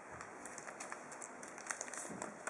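Faint rustling and crinkling of a sheet of origami paper being handled and creased by hand, with short crisp crackles that come more often near the end.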